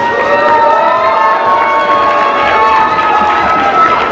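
A crowd cheering and shouting loudly, with many voices overlapping in long, high, held cheers.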